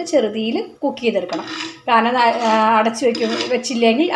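Steel ladle scraping and clinking against a clay pot as thick curry is stirred, under a woman's voice.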